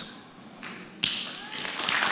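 Audience applause breaking out suddenly about a second in and building.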